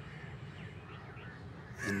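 Faint bird calls over a steady low hum.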